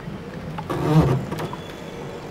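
A cricket delivery being bowled and played on an open ground, with a player's short shout about a second in over steady outdoor background noise.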